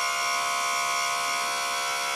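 Electric power trim/tilt pump of a 1985 Mercury 50 hp outboard running with a steady, even whine, pushing the motor up past the trim limit switch towards trailering position.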